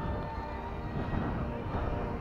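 Outdoor background noise: a steady low rumble with faint distant voices.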